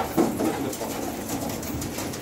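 Domestic pigeons cooing in a loft.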